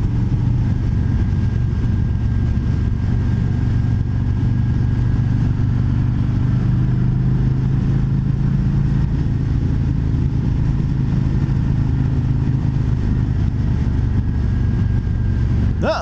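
Harley-Davidson Road King Special's Milwaukee-Eight 114 V-twin running steadily at cruising speed, heard from the rider's seat with wind rush, a constant low drone with no change in throttle.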